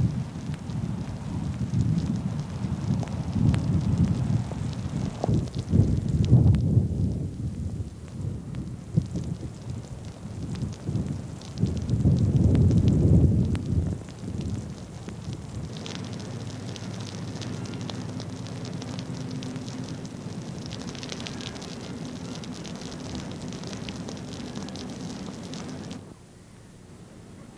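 Thunderstorm: low rolling thunder through the first half, loudest about twelve seconds in, then steady rain falling into standing water. This is the heavy rain that soaks and dissolves seed balls so they can germinate.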